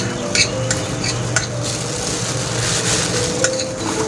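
Gloved hands mixing chopped crab meat and egg in a ceramic bowl: the plastic gloves crinkle and rustle against the food, with a few light clicks against the bowl.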